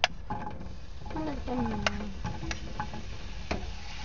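Sliced mushrooms sizzling as they hit a hot frying pan of coconut oil, with a few sharp taps of a utensil against the pan.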